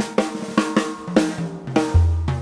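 Jazz drum kit playing a busy fill: a run of sharp snare and bass-drum strokes with cymbals, and faint sustained notes from the band beneath.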